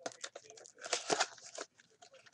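Crinkly wrapper of a Bowman Chrome baseball card pack being torn open and pulled apart by hand: a quick run of crackling rustles, loudest about a second in.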